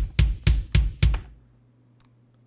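Playback of a multitrack rock drum recording, its kick layered with a processed kick sample that is now in phase with it, giving the kick its full low-end strength; a quick, even run of hits that stops about a second in as playback is halted, leaving only a faint low hum.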